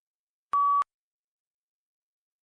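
A single short electronic beep, one steady tone about a third of a second long: the prompt tone signalling that answer recording has begun in a PTE Read Aloud task.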